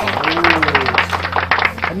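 Drumroll sound effect: a rapid run of taps lasting almost two seconds, over light background music.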